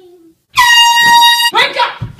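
An air horn blasts one loud, steady note for about a second, starting and stopping abruptly. A person shouts right after it.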